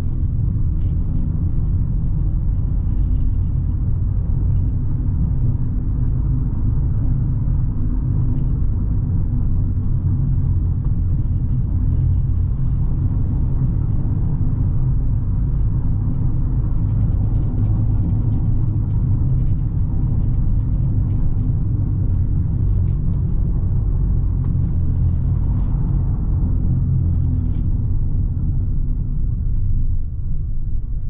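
Cabin noise of a Fiat 500 driving slowly over cobblestones: a steady low rumble from the tyres and the car.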